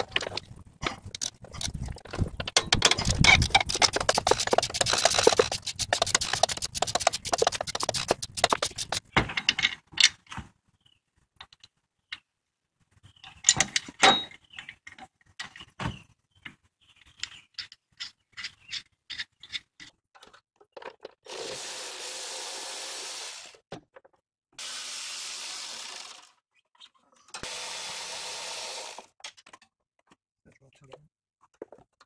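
A ratchet wrench clicking rapidly and steadily for the first nine seconds or so as a pulley bolt is worked loose, then scattered clicks and knocks of tools and parts. Near the end a Milwaukee M12 cordless power tool runs three times, about two seconds each.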